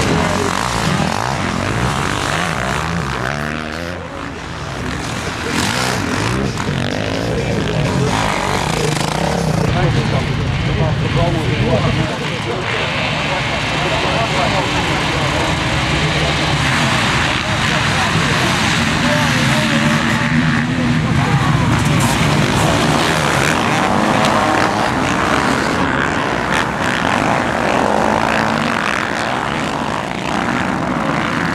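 Many motocross motorcycle engines running and revving together, bikes riding past and a full field revving on the start line of a snowy race track.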